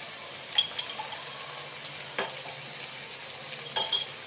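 Chopped onion and capsicum sizzling steadily in oil in a non-stick pan, with three short clinks of a steel spoon against the pan as sauce is added, the last near the end.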